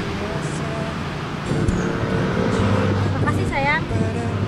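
Steady low hum of road traffic with a motor vehicle engine running nearby. A short, fast warbling sound comes near the end.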